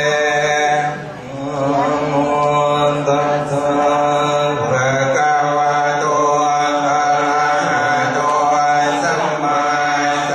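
Chanting in slow, held melodic lines over a steady low drone, with a brief lull about a second in.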